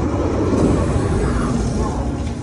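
Loud, steady rumbling sound effects from an animated show's soundtrack, played over theatre speakers.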